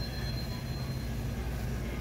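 Steady low hum and rumble of a large warehouse store's ventilation and refrigeration, with a faint high whine in the first part.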